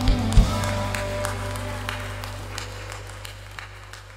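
A worship band's final chord ringing out over a held bass note and fading away, after two sharp drum hits at the start. Scattered clapping from the congregation sounds over it.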